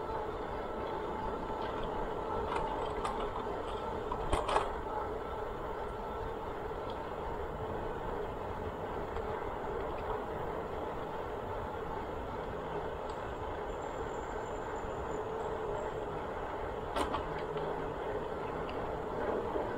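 Bicycle rolling along a paved asphalt trail: a steady noise of tyres on the pavement heard from a camera on the bike, with a few sharp clicks or knocks about four seconds in and again near the end.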